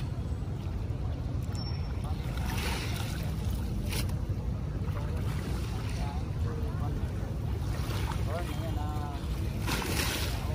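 Wind rumbling steadily on the microphone over small waves lapping at a shallow shoreline, with a few brief splashes as hands reach into the water to pick out litter.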